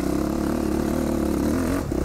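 Dirt bike engine running under load up a steep dirt hill climb, its note holding steady and then easing off and dropping in pitch shortly before the end.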